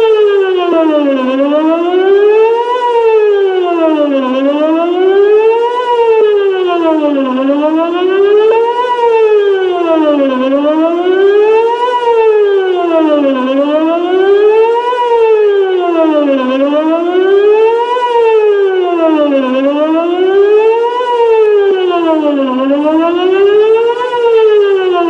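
Whelen WPS-2909 electronic outdoor warning siren sounding a loud tone that sweeps smoothly up and down in pitch, one rise and fall about every three seconds, repeating without a break.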